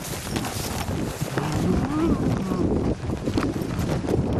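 A bull giving a long, wavering low moo about a third of the way in, over the rustle and footfalls of someone walking briskly through dry pasture grass with a handheld camera.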